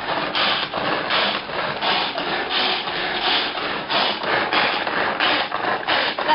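Hand-pulled cord food chopper chopping baby spinach: the cord is pulled again and again, each pull a short rasping whirr of the spinning blades, about two to three pulls a second.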